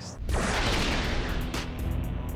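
Transition sound effect: a sudden whooshing boom about a quarter second in that fades over about a second, over background music with a steady bass.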